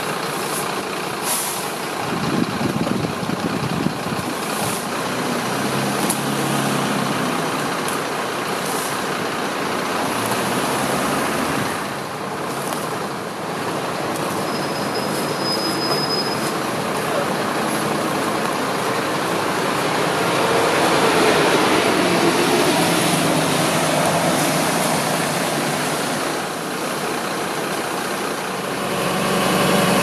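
Steady street noise of road traffic, with buses and heavy vehicles running, and a brief high thin tone about halfway through.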